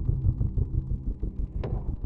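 Logo-intro sound design: a low rumbling drone that thins out after about a second, with a short swish near the end.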